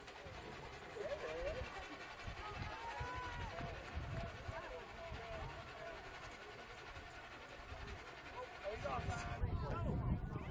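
Scattered voices and calls of players and spectators around an outdoor football field, growing louder and busier near the end as a play gets going.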